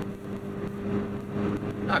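Car driving at a steady speed, heard from inside the cabin: a steady engine drone with tyre and road noise.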